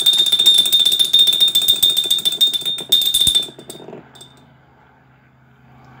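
A loud, high-pitched electronic buzzing tone, pulsing rapidly like an alarm, sounds for about three and a half seconds and then stops, leaving a faint low hum.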